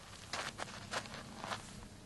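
A few short, soft scuffs and rustles, about four in two seconds, of a person shifting on a straw mat over sandy ground.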